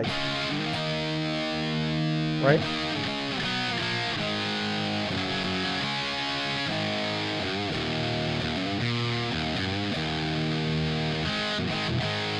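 Distorted electric guitar played through a Marshmello Jose 3Way 50-watt mod amp head, with both channels jumped in parallel so the bassier normal channel fattens the lead channel, giving some old-time fuzz. Held chords and single notes ring out and change every second or so.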